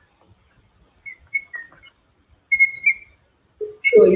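A recording of bird calls played back: short, shrill, whistled notes in a loose series, then a brief low note just before the end.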